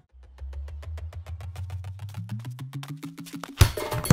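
Film background score: a fast, even ticking like a wood block, about eight ticks a second, over a low drone that steps up in pitch in the second half. A louder, noisy sound cuts in suddenly near the end.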